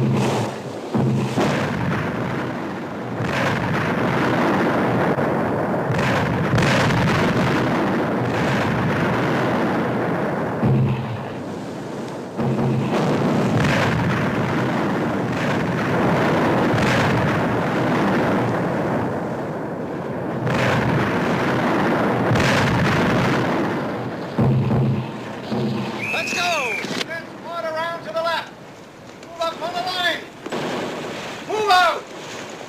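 Film battle sound of a mortar barrage: shell bursts running together into a continuous rumble that comes in several long waves. A wavering pitched sound rises over it near the end.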